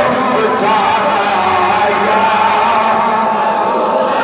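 A man's voice singing a long melodic line into a microphone, with sustained, wavering held notes.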